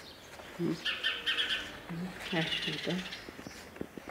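A small bird chirping in the background: a run of quick high notes about a second in, then a short trill.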